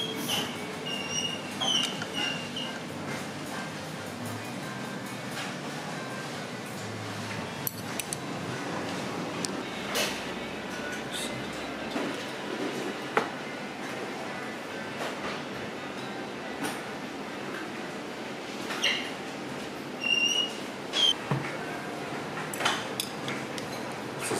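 Restaurant room noise with background music, and occasional short clinks of tableware and chopsticks against bowls.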